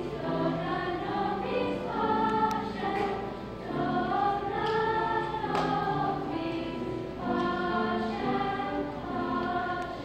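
A choir of young girls singing together, phrases of held notes with a short break about three and a half seconds in.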